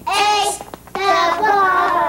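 High-pitched children's voices calling out in a sing-song, in two bursts, the second starting about a second in.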